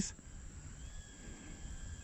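Faint, steady motor whine of the RH807H mini ducted-fan quadcopter hovering some distance off, rising slightly in pitch about halfway through.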